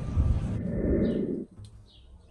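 Loud, rough, low outdoor street noise that cuts off suddenly about one and a half seconds in. A much quieter spell follows, with a few short bird chirps.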